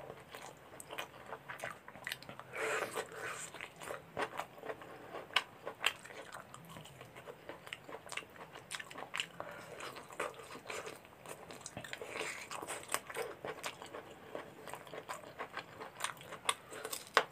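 Close-miked eating of chicken curry and rice by hand: chewing and wet mouth sounds, with the squelch of fingers mixing rice into gravy and many sharp clicks throughout.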